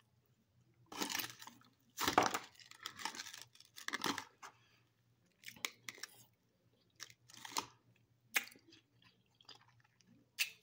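Crunching and chewing on frozen jello-coated grapes: irregular crunches, the loudest about two seconds in.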